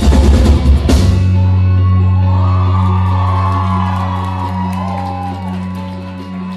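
Live rock band with drums and electric bass and guitars playing hard, closing the song with a last loud hit about a second in. A low chord then rings out from the amplifiers and slowly fades, with shouts and whoops over it.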